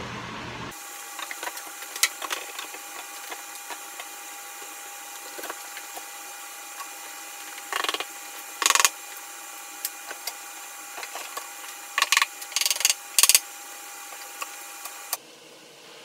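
Plywood panels and bar clamps being handled and set up on a concrete shop floor: scattered knocks and clatters, the loudest a little past the middle and a cluster near the end, over a steady background hum.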